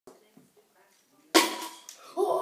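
A pencil striking the bottle at the foot of the stairs: one sudden sharp hit about a second and a third in, ringing briefly as it fades.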